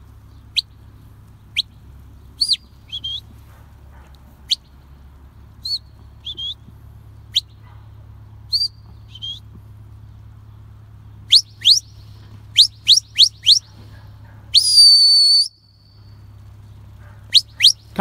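Sheepdog handler's whistle commands to a working border collie: a string of short, sharp whistle blasts that rise or fall in pitch, with a quick run of four or five about two-thirds of the way in and one long, steady blast about 15 seconds in.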